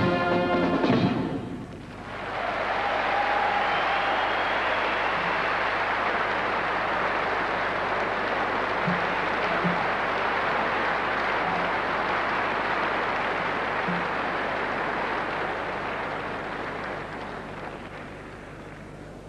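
A brass band with saxophone plays the last notes of a swing-style piece about a second in, then a large audience applauds steadily, the applause fading near the end.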